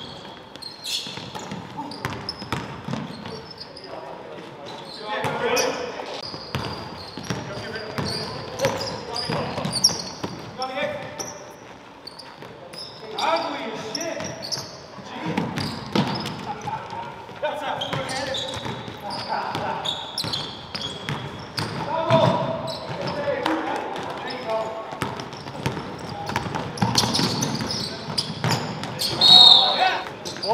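Basketball game on a hardwood gym floor: a basketball bouncing as it is dribbled, with players' voices calling out during play.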